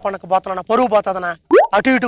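Men talking in Telugu in quick back-and-forth dialogue, with a short rising pitched sound about one and a half seconds in.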